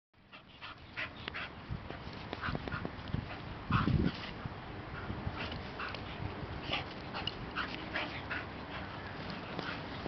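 A bull terrier and a pit bull play-fighting, giving short high-pitched dog cries scattered through the romp. There is a louder, lower burst of sound about four seconds in.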